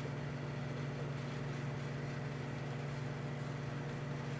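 Emerson microwave oven running with a steady, unchanging low hum while it heats incandescent light bulbs.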